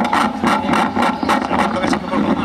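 Indistinct low talking close to an outdoor microphone, in short irregular bursts over a steady low hum.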